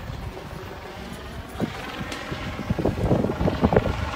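Wind buffeting the microphone of a handheld phone, a rough low rumble with irregular gusts that grow stronger in the second half.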